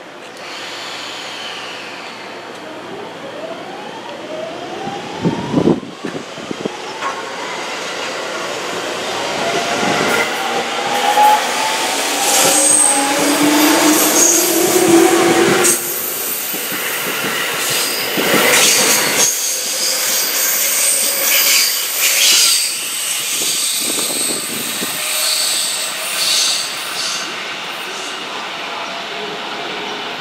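A JR East 205 series 5000-subseries electric commuter train pulling into the station. Its motor whine glides in pitch over the first half. Then it grows louder as the cars run past, with the wheels clicking over rail joints and high squealing.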